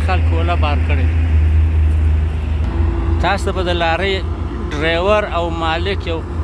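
Deep, steady rumble of a loaded Hino truck's diesel engine as it climbs past on the hill road, the rumble easing and turning uneven about two and a half seconds in. A man's voice comes and goes over it.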